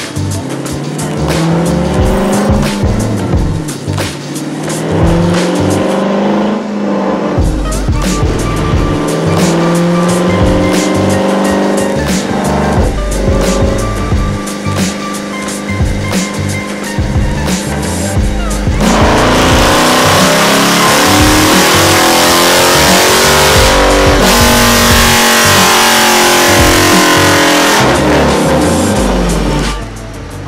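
Dodge Challenger's V8 run on a chassis dyno: revs rise and fall through the first half, then about two-thirds of the way in it goes to full throttle and runs loud and hard for about ten seconds before lifting off suddenly near the end.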